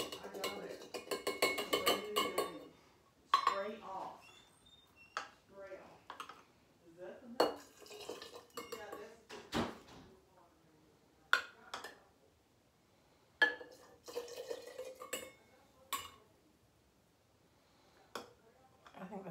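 A metal measuring cup and spoon clinking against a glass jar and a glass pitcher as fruit is spooned into the drink: a string of sharp, separate clinks, one every two seconds or so.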